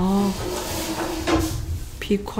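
A person's voice: a brief vocal sound at the start, then a single pitch held for about a second, like a drawn-out hum.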